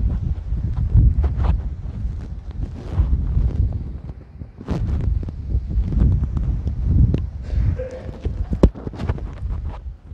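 Microphone handling noise from a headset microphone's cable and clip being handled and fastened to clothing: irregular rubbing with a low rumble, broken by knocks and clicks, the sharpest a little before the end.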